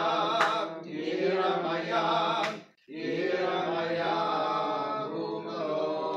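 Men's voices chanting Hebrew Shabbat liturgy in a steady melodic chant, with a short break for breath a little under three seconds in.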